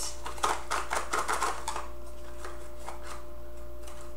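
A small cardboard perfume box being worked open by hand, with quick clicks and scrapes as a tightly fitting bottle is pulled out, bunched in the first two seconds and then one more click midway.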